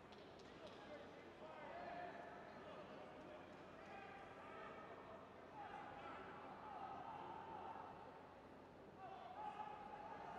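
Faint arena ambience in a large hall, with distant voices calling out, some of the calls drawn out for a second or two.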